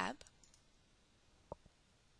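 A single computer mouse click about one and a half seconds in: a sharp tick followed closely by a fainter one.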